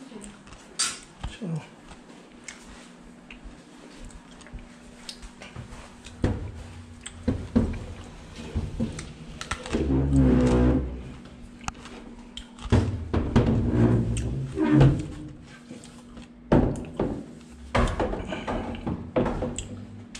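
Irregular knocks and thumps of a wooden TV wall panel and a handheld camera being handled, with louder rumbling handling noise about halfway through.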